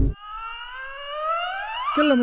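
An edited-in comedy sound effect: a pitched tone with several overtones sliding steadily upward for nearly two seconds, siren-like. The tail of a loud crash cuts off right at the start.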